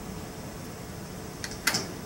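Two quick snips of small scissors, a faint one then a sharper one near the end, cutting the butts of a hair wing square, over a steady room hum.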